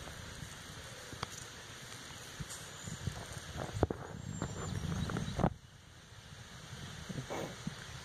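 Low rumbling noise on the phone's microphone with a few light clicks as the phone is handled and moved in close; the rumble builds and then cuts off suddenly about five and a half seconds in.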